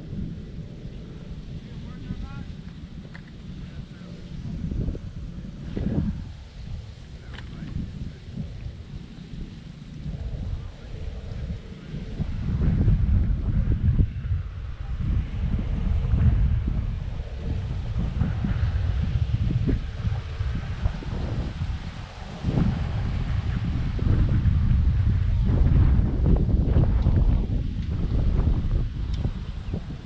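Gusty wind buffeting the microphone, a low rumble that swells and fades and grows stronger after the first dozen seconds.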